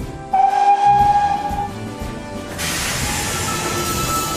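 Steam locomotive whistle blowing one steady note for about a second and a half, followed by a hiss of steam as the train pulls away, over background music.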